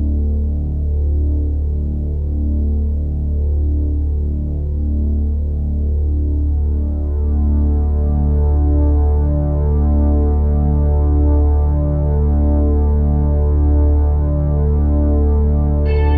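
Ambient outro music: a deep, steady synthesiser drone with layered tones pulsing slowly, filling out and growing brighter from about halfway through.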